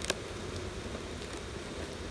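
Honeybees humming steadily over an open hive box full of bees, with one sharp click just after the start.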